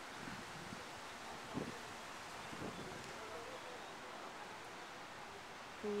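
Faint, steady outdoor background noise with light wind on the microphone.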